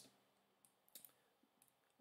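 Near silence, with a faint computer mouse click about a second in.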